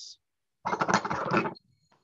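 Props being rummaged and picked up: a scratchy burst of handling noise about a second long, starting about half a second in, then a few faint knocks.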